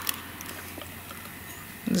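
Faint handling sounds of hot-foil sheet being peeled off a warm hot-foil plate, with one light click near the start and a few soft ticks over a low steady hum.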